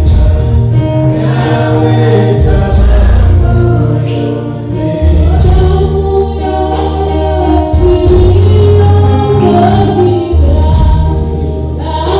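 Live gospel worship music: several voices singing together into microphones over an electronic keyboard, with a strong bass line and a steady beat.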